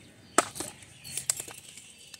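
Light plastic clicks from a plastic water bottle being handled: one sharp click about half a second in, then a few fainter taps about a second later.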